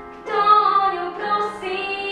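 A young female solo singer singing a slow song in Slovak with piano accompaniment; a new phrase begins about a third of a second in, on a held note.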